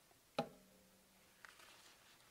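A quiet room with one sharp click or knock about half a second in, followed by a faint ringing tone lasting about a second, and a much fainter tick about a second later.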